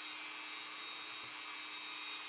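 A small motor running faintly and steadily: a level whir with a low hum under it.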